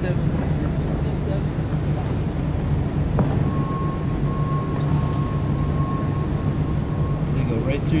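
Busy exhibition-hall background: a steady low hum under a wash of crowd chatter. About three seconds in there is a click, then a thin steady high tone that holds for about four seconds and stops shortly before the end.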